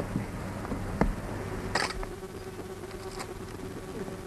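A steady buzzing hum, with a sharp click about a second in and a short scratchy burst just before the two-second mark.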